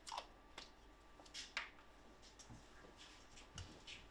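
Faint, sparse clicks of a plastic prescription pill bottle being handled: its cap twisted open, a capsule taken out, and the bottle set down on the counter.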